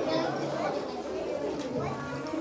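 Many children's voices chattering and calling over one another: general playground babble.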